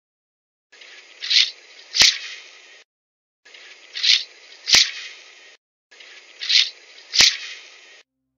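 Seismometer signal of the 2014 CNEOS interstellar meteor's impact on the sea off Papua New Guinea, recorded on Manus Island and converted to sound: a two-second hiss with two sharp swells, the second ending in a click. It plays three times in a loop, with short silences between.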